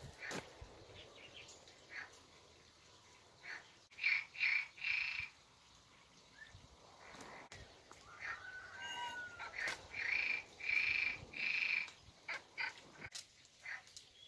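A bird calling in short repeated notes, three in a row and then four more a few seconds later, over small clicks and rustles of wire and reed cane being handled as the cane roof is tied down.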